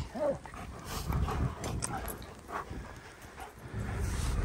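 German Shepherd dogs whimpering softly now and then, over a low rumble of wind.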